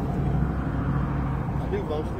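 Steady low hum of a car engine running at idle, heard from inside the car's cabin.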